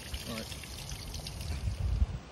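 Steady, soft hiss of running or trickling water, with a brief low rumble near the end.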